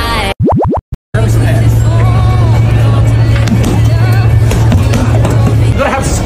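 A quick series of rising electronic sweeps, cut by brief dropouts to silence, about half a second in. Then background music with a steady low bass note and voices over it.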